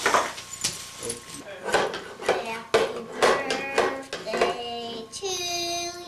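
Wrapping paper crinkling and tearing as a gift is unwrapped, with a small child's short voice sounds in between. Near the end a young child's voice holds one long sung note.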